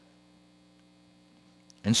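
Low, steady electrical mains hum from the sound system, heard in a pause in speech. A man's voice starts again near the end.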